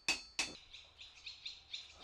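Two blacksmith's hammer blows on red-hot iron on an anvil, about a third of a second apart, followed by small birds chirping in quick, high, repeated notes.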